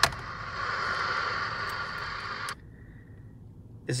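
Static hissing from a Cobra CB radio's speaker, with a click at the start. The hiss cuts off abruptly about two and a half seconds in.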